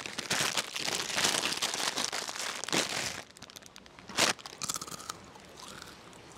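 A clear plastic bag crinkling and rustling as it is handled, for about three seconds, then one sharp crackle about four seconds in and a few quieter ones after it.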